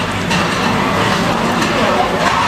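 Restaurant din: a steady background hum with indistinct voices of other diners.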